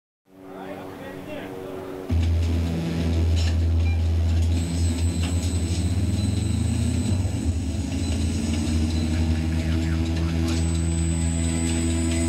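A deep, steady electronic hum that comes in suddenly about two seconds in, over softer held tones before it, with scattered clicks.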